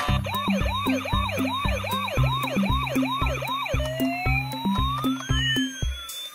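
Electronic siren from a battery-powered toy police car: a fast yelping wail of about three sweeps a second that changes, about two-thirds through, into a slower wail rising and falling. Background music with a steady beat plays underneath.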